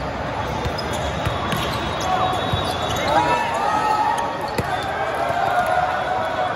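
Indoor volleyball play: a few sharp hits of the ball and short squeaks of sneakers on the sport court, over the steady voice babble of a big hall full of courts.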